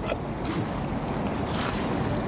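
Outdoor riverside ambience: steady wind noise on the microphone, with short bursts of higher hiss near the start and about a second and a half in.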